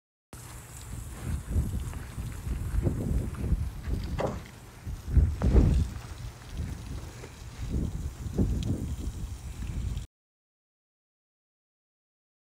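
Garden hose spraying water onto a smouldering woodpile, heard through a heavy low rumble on the phone's microphone, with several louder swells. The sound starts a moment in and stops abruptly near the end.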